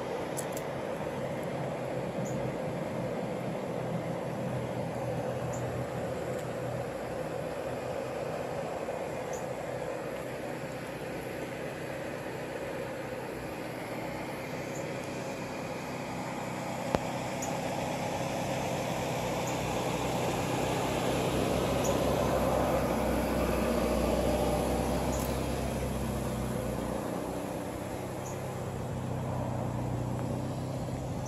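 Many honey bees buzzing steadily as they forage on Japanese knotweed blossoms. A low rumble swells and fades about two-thirds of the way through, and there is one sharp click a little past halfway.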